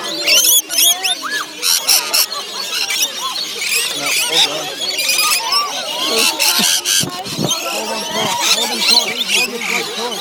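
A flock of rainbow lorikeets screeching and chattering at close range, many short rising and falling calls overlapping without a break as the birds crowd around bowls of nectar.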